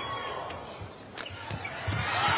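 Badminton rally sounds: a few sharp shuttlecock strikes from rackets and footwork on the court mat, over arena crowd noise that grows louder. A dull thud near the end as a player dives onto the court.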